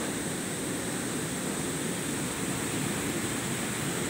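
Swollen, muddy stream rushing over a low weir: a steady, even rush of water.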